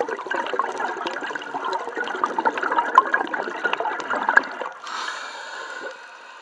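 Scuba diver exhaling through a regulator: a long burst of bubbling and gurgling lasting about four and a half seconds, followed near the end by the steady hiss of the next inhalation through the demand valve.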